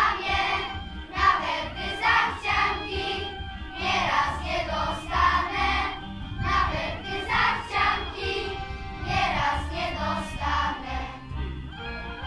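Children's choir of young girls singing a song together, over an amplified backing track with a regular low beat.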